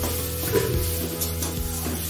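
Food frying in a steel kadai, sizzling, while a metal spatula stirs and scrapes against the pan in a few strokes. Steady background music runs underneath.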